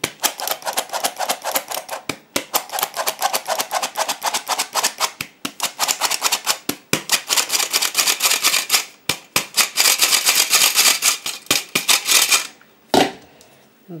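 Hand-operated metal flour sifter being worked over a glass bowl, a rapid, steady clicking of its mechanism as flour is sifted onto cake batter. The clicking stops shortly before the end, followed by a single knock.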